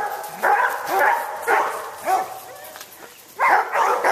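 Dogs barking in a loose series of short barks, with a lull in the middle and more barking near the end.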